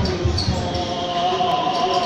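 A few low dull thumps in the first half-second, then a voice holding a steady note.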